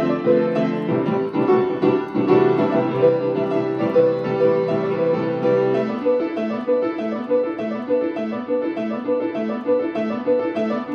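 Solo grand piano playing a repeating figure of notes in the middle register over held low notes. The low notes drop away about six seconds in, leaving the repeating figure alone.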